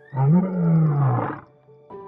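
A male lion roaring once: a single call of about a second and a half that rises and then falls in pitch, over soft background music.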